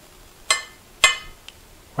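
A metal spoon clinking twice against a ceramic plate, about half a second and a second in, each strike with a short ring, as couscous salad is spooned out onto it; a faint tap follows.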